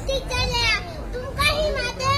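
A young girl speaking forcefully into a microphone in a high voice, delivering a recited speech with short pauses between phrases.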